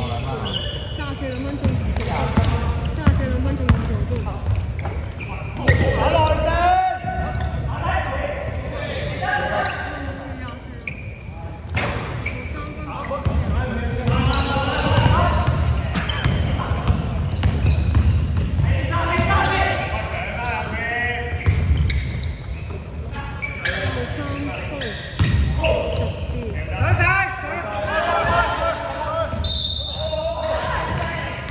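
Basketball bouncing on a hardwood gym floor during play, with voices calling out on the court, all in a reverberant sports hall.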